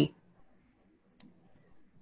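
A pause with near silence, broken by one faint, short click about a second in.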